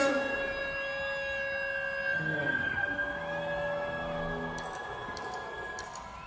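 Live rock band on stage holding long droning tones before a song: a steady high tone runs on, with lower held notes coming in about two seconds in.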